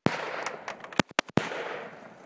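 Competition gunfire: loud noise trailing a shot fired just before fills the first half-second, then three sharp gunshots in quick succession about a second in.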